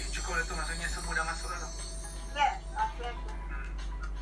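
Voices with music, played through a laptop's speaker from an online video call.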